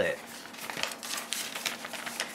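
Paper instruction sheet rustling and crinkling as it is handled and folded, with a run of small irregular crackles.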